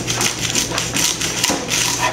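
Kitchen knife cutting the top off an elephant garlic bulb: a run of irregular sharp taps and crackles as the blade goes through the papery skin and cloves and knocks on a wooden cutting board.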